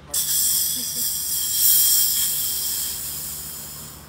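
Pressurised CO2 hissing from a charger into a soda siphon to recarbonate homemade orange soda that had gone flat. The hiss starts abruptly and fades slowly over about four seconds.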